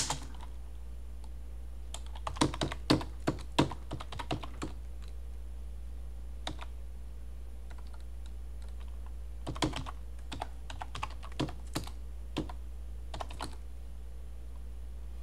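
Computer keyboard keystrokes in short bursts with pauses between them: a command typed into a Linux terminal, a single key press, then a sudo password typed in a second run of keys from about ten seconds in. A steady low hum runs underneath.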